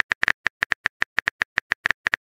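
Keyboard typing sound effect: a rapid, uneven run of sharp key clicks, about eight a second, the cue for a chat message being typed.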